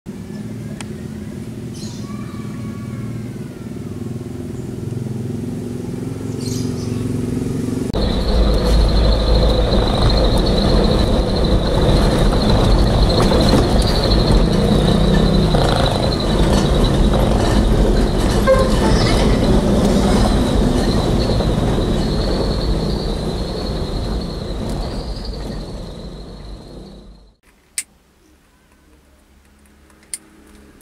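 A vehicle engine running on the street, then from about eight seconds in, loud engine and road rumble heard from inside a small vehicle's cab driving over a rough, potholed road, with a steady high whine over it. A few seconds before the end it cuts off sharply to quiet, followed by a single click.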